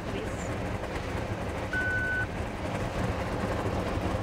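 Steady rumble of a night-train passenger coach running, heard inside the compartment. About two seconds in, a handheld card terminal gives a single short beep as a contactless phone payment is made.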